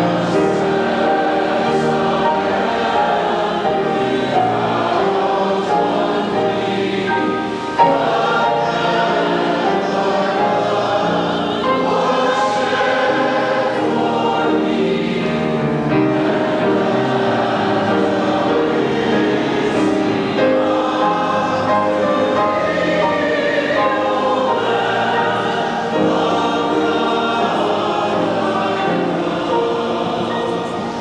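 Congregation singing a slow hymn together in unison, long held notes.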